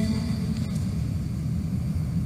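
A steady low rumble with no pitched voices, in a gap between chanted phrases of the litany.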